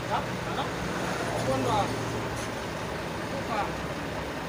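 Voices talking in the background over a steady low rumble of road traffic. A low hum eases off about halfway through.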